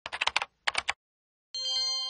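Two quick runs of sharp clicks like typing on a computer keyboard, then a short pause, then about a second and a half in a bright chime with several ringing tones that starts to fade.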